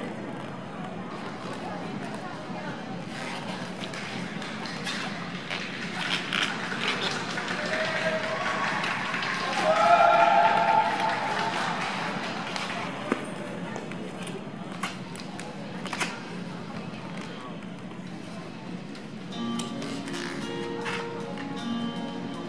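Ice-rink hall ambience with voices and scattered clicks, and a voice calling out loudly about ten seconds in. Near the end the skater's program music starts.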